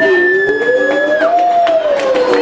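Wordless voices at a live band performance: one long note that slides up and back down, under a high steady held tone that stops a little past a second in, with light hand claps.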